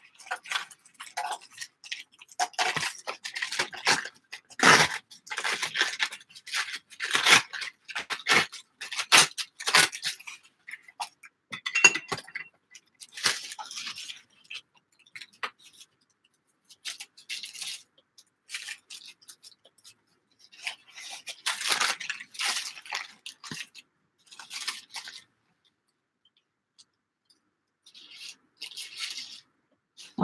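Paper being torn along a ruler and handled: a string of short ripping and rustling sounds, with a few quiet pauses in the second half.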